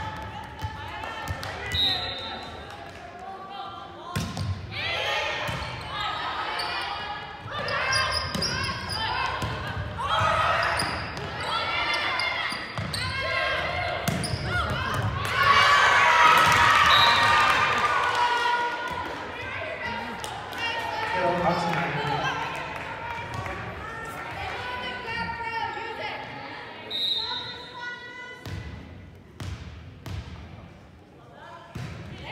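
Indoor volleyball play in a large, echoing gym: players shouting and calling out, with sharp ball hits and bounces on the hardwood floor. The shouting is loudest about halfway through.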